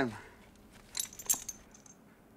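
A brief metallic jingling: a few light clinks about a second in, as the last word of the speech dies away.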